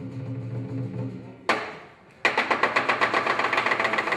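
Lion dance percussion: a low steady hum, then a single crash about a second and a half in that rings away to a short silence, then a loud, fast, even beating of drum and cymbals, about eight strokes a second, starting just past two seconds as the sleeping lions wake.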